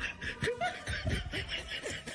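Snickering and chuckling laughter: a run of short, quick bursts of giggly laughter.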